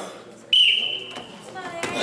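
Referee's whistle, one short steady blast of about two-thirds of a second, signalling the wrestlers in the referee's position to start, Red on top.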